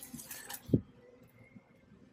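A potted houseplant being handled and lifted off a store shelf: faint rustling of leaves and plastic, with one short soft thump about three-quarters of a second in, then only faint background hum.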